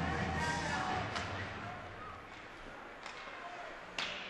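Arena rock music fading out in the first second or two, leaving hockey-arena crowd noise with sharp clacks of stick on puck: one about a second in, a faint one about three seconds in, and a louder one right at the end.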